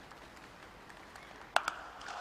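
A willow cricket bat striking the ball: one sharp crack about one and a half seconds in, with a fainter knock right after it, over a low hum of crowd noise. The ball is hit for six.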